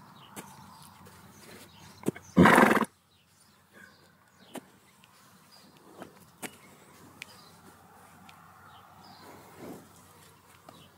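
A horse's single loud snort, about half a second long, a little over two seconds in, among scattered light knocks and clicks as a flag on a stick is worked around her hind legs and she kicks at it.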